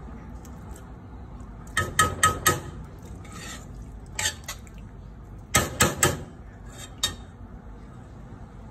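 Metal spoon knocking and scraping against the side of a stainless steel pot while stirring a thick stew: a quick run of sharp clinks about two seconds in, another about six seconds in, and single knocks between them.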